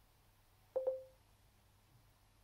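A single short electronic beep from the smartphone as it is tapped: a click, then one steady tone that fades out within about half a second, a little under a second in.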